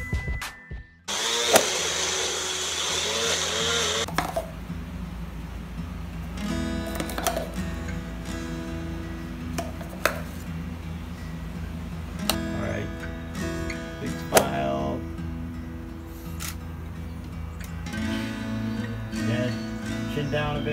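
A Magic Bullet personal blender's motor runs for a few seconds near the start, blending a protein shake. After that a backing pop song with singing plays.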